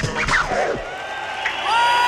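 Hip-hop track with turntable scratching cuts off just under a second in. An audience then cheers and whoops, getting louder near the end.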